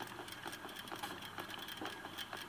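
Bicycle front wheel spinning freely on its hub, with a faint, fast ticking. The hub bearings are freshly cleaned and lubricated with WD-40.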